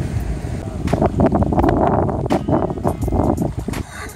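Wind buffeting the microphone, a steady low rumble, with scattered short clicks and crunches throughout.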